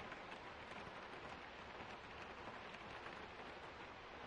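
Faint, steady rain patter with fine drips.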